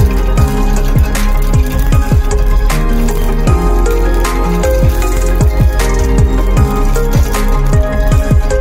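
Electronic background music with a steady beat and repeated falling bass notes.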